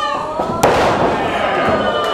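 A wrestler's body slammed onto the ring canvas: one loud, sharp crash about half a second in, which then dies away.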